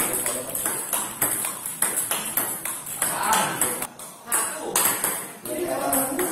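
Table tennis multiball drill: plastic ball struck by rubber-faced bats and bouncing on the table in a quick run of sharp clicks, about three a second.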